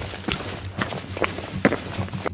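Footsteps crunching on a rocky, gravelly trail, about two steps a second.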